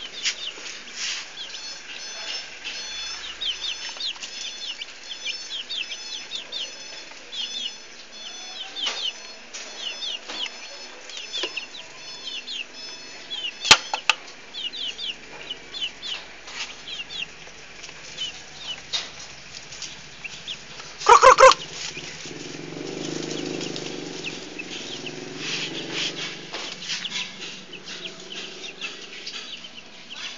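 Young chickens peeping over and over with short, high, falling chirps. There is a single sharp click about 14 s in and one brief loud call about 21 s in, followed by a few seconds of low rustling.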